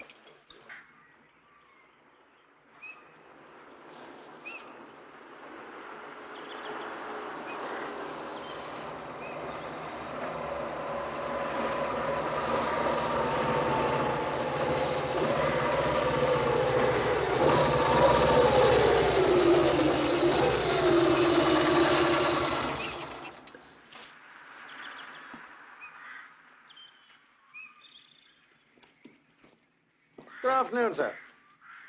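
Motorcycle engine approaching, growing steadily louder, then its note falling as it slows before it cuts off abruptly.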